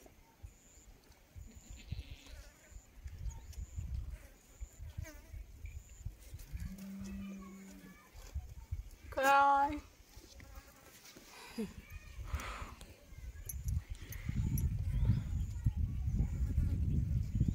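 A bleat from a grazing flock of sheep and goats: one loud, quavering call about nine seconds in, preceded a couple of seconds earlier by a shorter, steadier, lower call.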